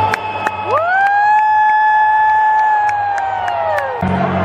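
Stadium crowd cheering, with one voice close by holding a long high "woo" that swoops up about a second in, stays level, then falls away near the end. A few sharp claps punctuate it.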